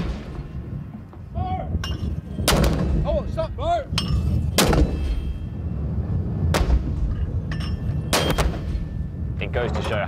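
A mortar firing repeatedly: about five sharp reports roughly two seconds apart, over a steady low rumble.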